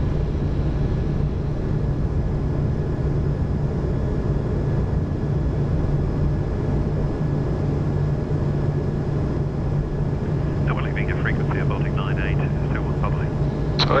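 Steady flight-deck noise of an Airbus A220 in its initial climb after takeoff: a constant rush of airflow and engine noise with a steady low hum underneath.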